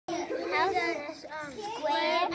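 Young children talking in high-pitched voices, the words unclear.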